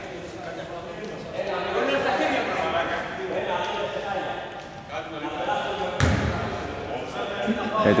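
Voices talking in a large, echoing gymnasium, with one sharp thud about six seconds in, a basketball bouncing on the hardwood court.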